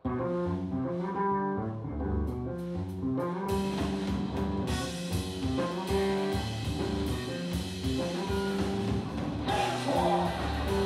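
Live rock power trio of electric bass, electric guitar and drum kit starting a song abruptly on the first note, bass and guitar notes stepping in a fast riff. Cymbals come in about three and a half seconds in, and the full band is playing from about five seconds in.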